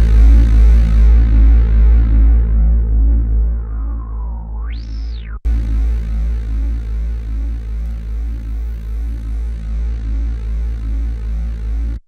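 Roland Juno-106 synthesizer playing a repeating deep bass pattern while its filter is swept by hand. The sound dulls over the first few seconds, then a resonant peak glides down and sweeps sharply up about four to five seconds in, with a brief dropout just after.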